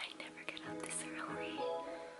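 A woman whispering, with soft background music under it.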